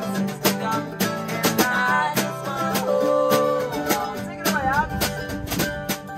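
Acoustic folk band playing an instrumental passage: mandolin and acoustic guitar strummed and picked over snare drum hits.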